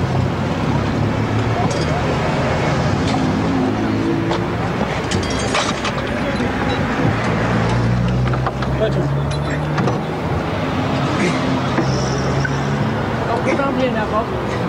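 Vehicle engines running steadily, with scattered metallic clinks and knocks of tools against the underside of a car during a gearbox change, and background voices.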